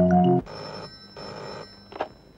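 Telephone ringing in two short bursts, then a click as the handset is picked up. The tail of a mallet-percussion film tune cuts off just before the first ring.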